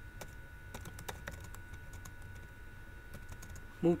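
Computer keyboard keystrokes, a quick irregular run of clicks mostly in the first second and a half, then a few fainter ones, over a low steady hum.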